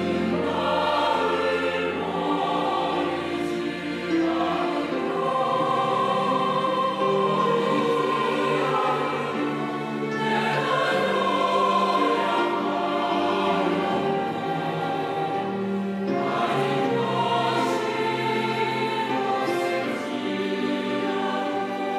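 A church choir singing a Korean hymn in long, held phrases, accompanied by a small string ensemble of violins and cellos.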